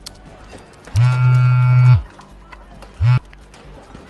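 A loud, harsh electronic buzz lasting about a second, then a second short buzz about a second later, over faint background music.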